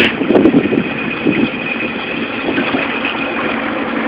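A log flume boat moving along its water channel, with a steady noise of running water and the ride in motion that eases slightly after the first second.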